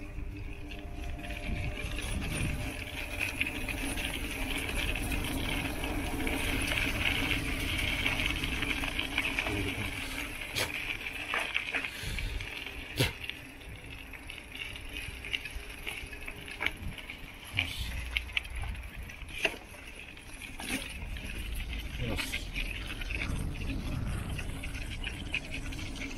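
Bicycle rolling over a rough path of worn asphalt and then gravel: a steady rolling rumble with scattered sharp knocks and rattles as the bike jolts over bumps.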